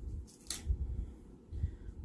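Paper sticker sheets being handled and set down: soft low bumps against the table, with one brief crisp paper rustle about half a second in.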